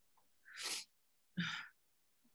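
A person sneezing once: a short sharp breath, then the sneeze itself just under a second later.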